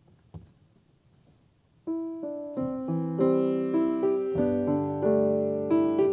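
A grand piano starts playing about two seconds in, a slow piece of held notes and chords that gets gradually fuller. Before it, a faint knock.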